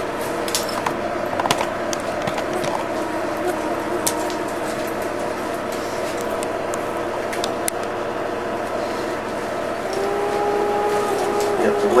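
A camcorder being picked up and moved, with scattered light clicks and knocks of handling over a steady background hum.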